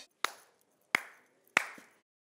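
Three slow, single hand claps, about two-thirds of a second apart, each sharp with a short ring after it.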